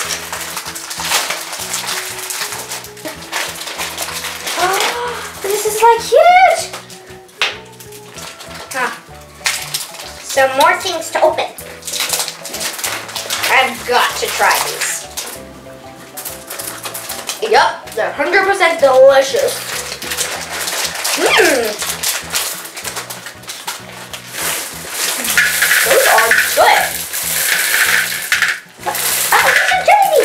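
Background music with a steady, stepping bass line, with voice-like sounds here and there and the rustle of sweet packets being opened and their contents poured into glass bowls.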